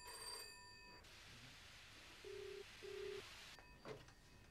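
Landline telephone ringing in the British double-ring pattern. One double ring comes at the start, and a second, fainter and lower-pitched, comes a little past two seconds in.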